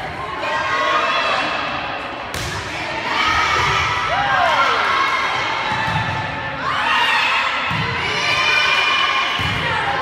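Spectators and players shouting and cheering during a girls' volleyball rally, with several thuds of the ball being struck.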